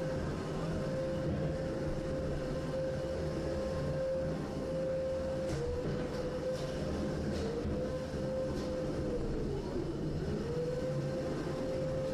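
Combat robot's spinning weapon running with a steady whine that sags in pitch several times, dropping furthest about nine to ten seconds in before winding back up, over arena noise with a few light knocks.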